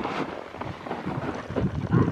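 Blue plastic toboggan sliding and scraping over powder snow, with wind noise on the microphone.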